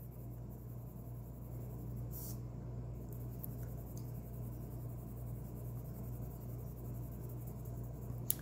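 A coloured pencil lightly shading on paper: a faint, soft scratching, over a steady low hum.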